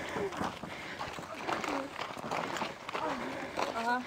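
Several people talking at a distance, with footsteps on a gravel track.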